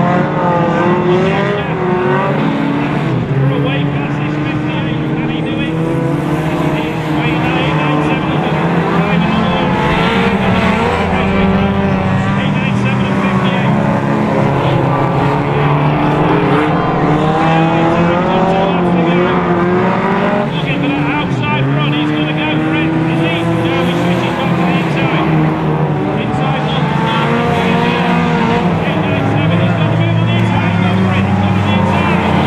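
Several hot rod race cars lapping a shale oval together, their engines revving up and falling back in overlapping pitches as they accelerate and lift through the bends.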